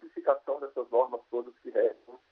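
Speech only: a man talking in Portuguese over a narrow-band remote line, so the voice sounds thin, like a phone or radio.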